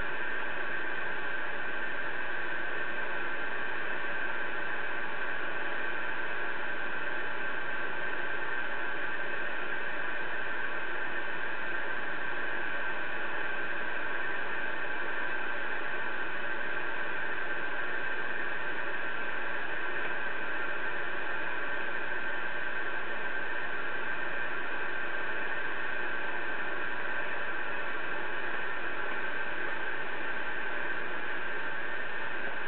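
Connex CX-3400HP CB radio giving out a steady, even hiss of static from its speaker, with no station coming through.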